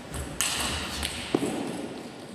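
Table tennis ball sounds at the end of a rally: sharp taps, then a single ringing ping about a second and a half in. Under them, a short spell of broad noise rises and fades away.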